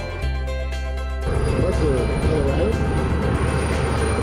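Background music throughout, joined about a second in by a steady rushing noise and a voice.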